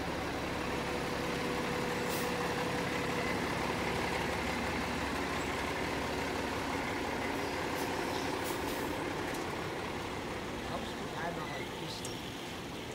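Fire engine's diesel engine idling at the curb: a steady running sound with a low hum, easing slightly near the end.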